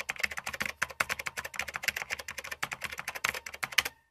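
Typing sound effect: rapid keyboard key clicks, about ten a second, as on-screen text is typed out letter by letter.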